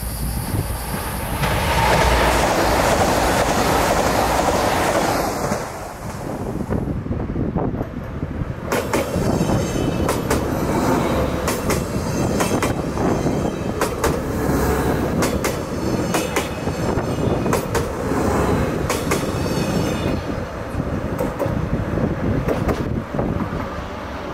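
Passenger train passing close by. A loud rush of running noise comes first, then a steady rumble with repeated sharp wheel clacks over rail joints.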